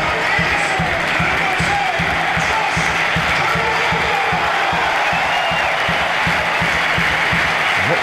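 Stadium crowd cheering and chanting as one steady roar, celebrating a home goal.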